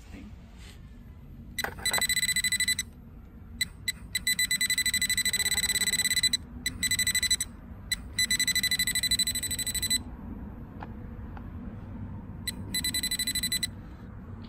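Bullseye TRX metal-detecting pinpointer giving a rapid, high-pitched pulsing beep in several bursts, about five over the stretch, as it is held to a torch-melted metal lump: it is detecting metal that the unmelted rocks did not set off.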